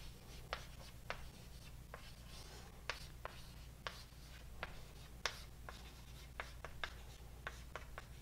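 Writing on a board: a run of short, irregular taps with a few faint scratching strokes between them, over a steady low room hum.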